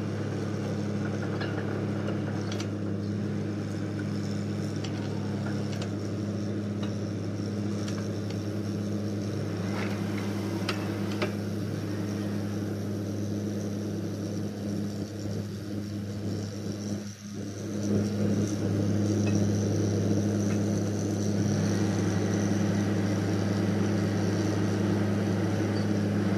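Truck-mounted borewell drilling rig running with a steady low drone. The sound dips briefly about seventeen seconds in and then comes back a little louder.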